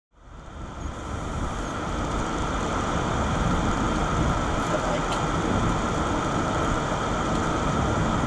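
Steady road and engine noise inside a Citroën car's cabin as it drives along a lane, a low rumble with a faint steady tone, fading in over the first second.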